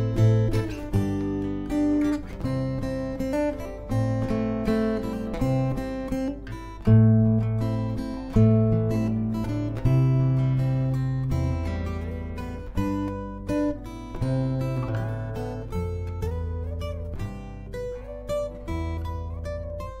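Solo acoustic guitar played fingerstyle in A minor: a slow melody line picked over ringing bass notes and chords, each plucked note fading away.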